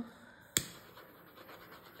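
A single sharp click about halfway through, then faint scratching and rubbing as a cup and tools are handled.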